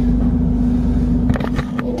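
Steady low machine hum, with a few sharp clicks and knocks about one and a half seconds in.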